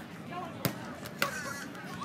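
A beach volleyball struck by players' hands twice, two sharp smacks about half a second apart, with faint voices in the background.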